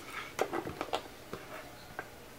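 A few light clicks and small knocks as a VGA signal cable's plug is handled and pushed into its socket.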